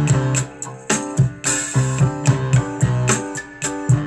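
A song with a steady drum beat, a strong bass line, and keyboard and guitar, played through a pair of Canston R218 bookshelf speakers in a room where the back wall and desk resonate strongly.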